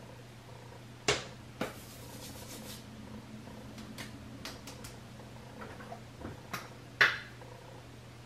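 Small clicks and knocks of makeup containers being handled and set down, the loudest about a second in and near the end, over a steady low hum.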